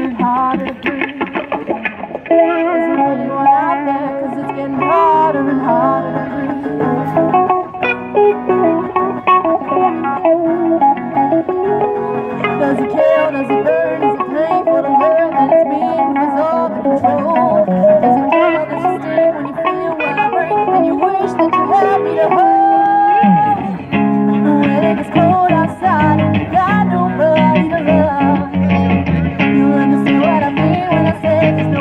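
Live amplified band playing an instrumental break: an electric guitar plays a lead line with bends in pitch over chordal accompaniment and a low bass part. Someone shouts "Woo!" about 13 seconds in.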